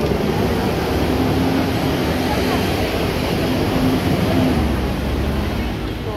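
Busy street noise: a steady wash of traffic with people's voices mixed in.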